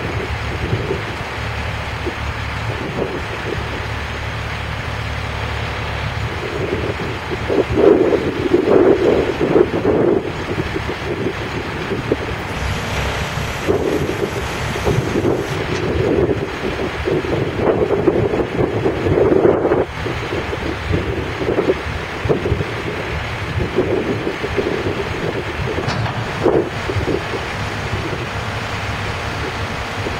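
Wind buffeting the microphone, with irregular gusts, over the low, steady running of a boom truck's engine.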